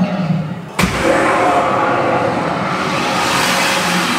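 The dragon atop Gringotts Bank breathing fire: a sudden loud blast about a second in, then a rush of flame that carries on for about three seconds before fading.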